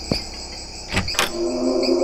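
Crickets chirring steadily, with a couple of sharp clicks about a second in. A low held musical note comes in during the second half.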